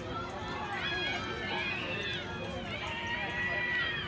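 Several high-pitched voices cheering and calling out together at a softball game, swelling up just under a second in and carrying on, over a faint steady hum.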